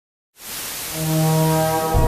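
Channel logo intro music: after a brief silence, a whoosh swells in over a sustained low, horn-like chord that grows louder, and a deep hit lands near the end.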